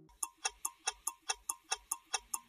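Rapid, even clock-like ticking, about four to five ticks a second, with alternating ticks that differ slightly in tone, like a tick-tock.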